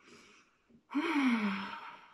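A woman's admiring sigh: a faint breathy intake, then about a second in a long breathy voiced "ahh" that falls in pitch.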